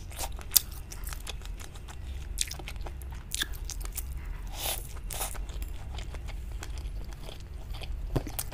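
Close-miked eating of sauced fried food on bamboo skewers: biting and chewing with irregular sharp crunches and wet mouth clicks, the loudest about half a second in.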